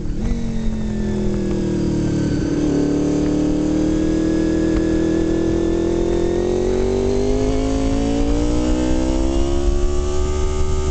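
Motorcycle engine running under way: its pitch falls over the first three seconds, holds steady, then climbs smoothly through the second half as the bike accelerates, over a low rumble.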